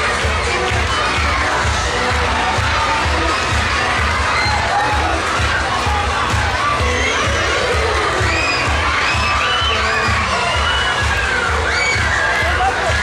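A crowd of children shouting and cheering, with many high squeals, over pop music with a steady bass beat. The squealing grows busier in the second half.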